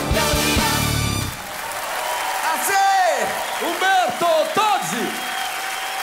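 A live pop band with a brass section ends the song on a held final chord about a second in. The studio audience then applauds and cheers, with shouting voices over the clapping.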